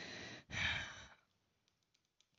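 A reader's breath close to the microphone, heard in a pause between sentences: a soft breath, then a second, louder breath that ends about a second in.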